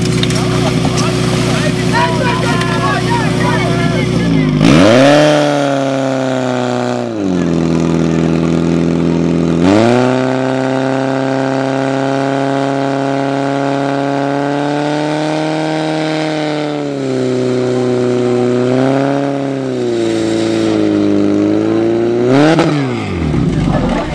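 Portable fire-sport pump's engine idling, then revved hard about four seconds in and held at high revs with several dips and rises while it drives water through the attack hoses, with a last rise and fall just before it cuts off near the end. A voice is heard over the idle at the start.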